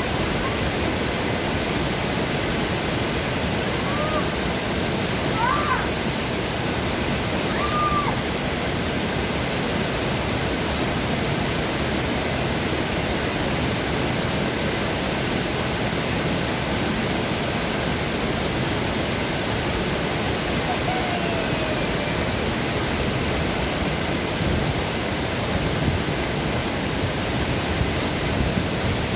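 Steady rush of a small waterfall pouring through a stone weir into a plunge pool.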